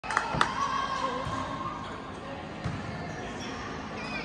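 A volleyball thudding on a hardwood gym floor and off players' hands: a few sharp thuds, the loudest about half a second in, echoing through the gym.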